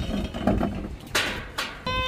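Toddlers' voices at play: short vocal sounds, a brief raspy noise a little past a second in, and a high child's squeal starting near the end.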